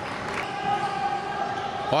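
Futsal ball being kicked and bouncing on a wooden indoor court, echoing in a sports hall, over a steady faint tone.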